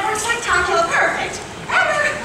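Performers' high-pitched voices from the stage: short exclamations or squeals rather than clear words, heard through the theatre's sound system.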